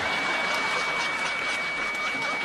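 Steady record-store room noise, an even background hiss with a thin high whine running through it.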